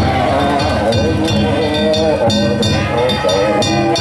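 Danjiri festival float music: hand-held kane gongs clanging in a rapid, steady rhythm over taiko drum beats, with men's voices calling out over it.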